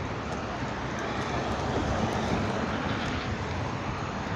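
Street traffic noise with a motor vehicle passing close by. Its sound swells to a peak a little past the middle and then eases off.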